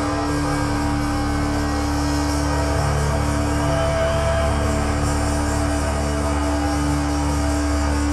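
Live thrash metal band's electric guitar and bass sustaining one steady, droning note through the stage amplifiers, with a low rumble underneath and no drums.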